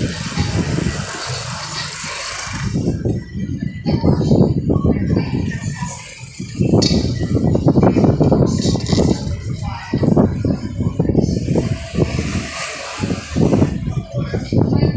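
A car driving slowly along a street, heard from inside: road and engine noise with irregular rumbling surges on the microphone, and indistinct voices.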